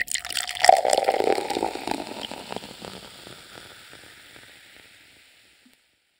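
Crackling, splashy noise that starts suddenly, is loudest about a second in, and fades away over about five seconds.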